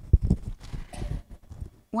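Painting tools being handled on the work table: a sharp knock just after the start, then several soft, irregular thumps with a faint swish between them.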